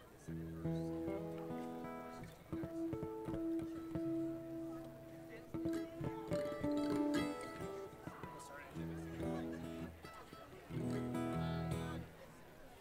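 Acoustic guitars and other string instruments sounding strummed chords and single ringing notes in short stop-and-start phrases with pauses between, like a string band tuning and warming up before a song.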